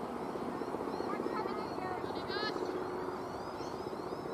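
A low, rapidly pulsing motor drone runs steadily, with birds chirping over it and a quick run of high chirps about two seconds in.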